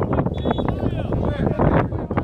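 Indistinct voices of soccer players calling out across the pitch, over a steady rumble of wind on the microphone.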